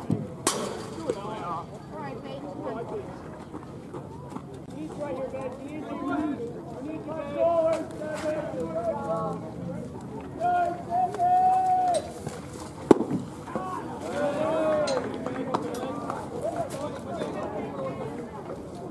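Players and spectators calling out and chattering at a baseball game, with one long held shout about ten seconds in. A sharp pop about half a second in as the pitch reaches the plate, and another sharp crack about 13 seconds in.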